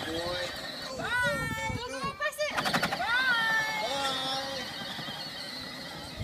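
A toddler's high-pitched wordless calls, gliding up and down in pitch, with the longest about a second in and about three seconds in.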